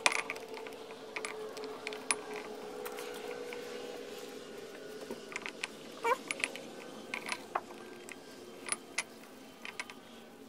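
Scattered light metal clicks and clinks, sometimes a few in a second, as the steel bolts of a flywheel puller are handled and threaded into the flywheel hub of a small Johnson Colt outboard. A faint steady hum sits underneath.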